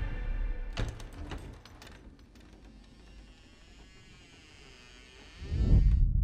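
Horror-film score and sound design: a few sharp knocks about a second in, then a faint, wavering, eerie drone. A loud low rumble swells in just before the end.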